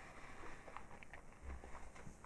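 Quiet chewing of a cookie, heard as a few faint soft clicks, with a low dull thud about one and a half seconds in.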